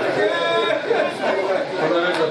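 Speech: a man delivering an oration into a microphone.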